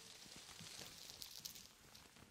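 Faint rustle of a lace dress being handled, fingers brushing over the fabric and beaded waistband with a soft hiss and small ticks.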